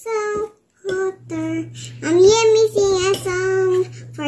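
A toddler singing a short made-up tune in a series of held notes, the longest ones in the second half. A steady low hum sets in about a second in and runs underneath.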